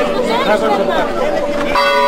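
Church bell tolling over the chatter of a large crowd: its ring hangs on steadily, and a fresh stroke sounds near the end.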